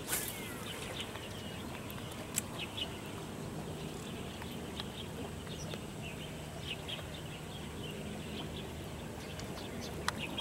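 Short bird chirps scattered over a steady low outdoor background, with a single sharp click about two and a half seconds in.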